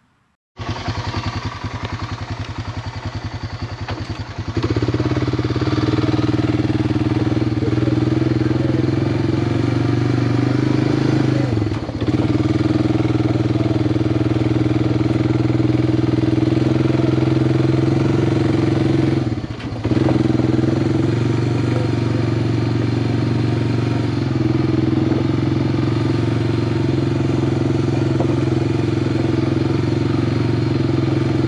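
ATV engine running as the quad is ridden along a dirt woodland trail. It pulses at a lower level at first, grows louder about four seconds in, then holds a steady note with two brief dips, around the middle and about two-thirds of the way through.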